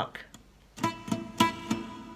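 Acoustic guitar played with a plectrum: after a short pause, four single notes picked about a third of a second apart, each left ringing, in an alternate-picking demonstration.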